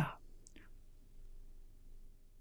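A man's voice ends a spoken Mandarin word, followed by a pause with one faint click about half a second in and low room tone.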